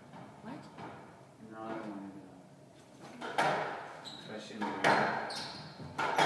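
Squash ball being hit by racquets and striking the court walls as a rally starts, heard as sharp single cracks from a little past halfway, spaced about a second or more apart, with voices underneath.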